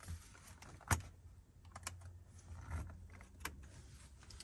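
Scattered clicks and taps from keystrokes on a Chromebook laptop's keyboard, with one sharper click about a second in.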